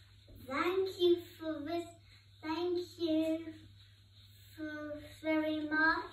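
A child singing unaccompanied in short phrases of held notes, with brief pauses between phrases and a longer pause past the middle.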